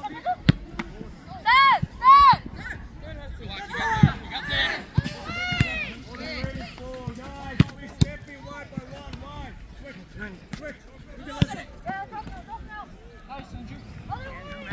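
Soccer ball kicked several times on an artificial-turf pitch, sharp thuds scattered through the play, mixed with short shouted calls from players and the sideline, two of them loud about two seconds in.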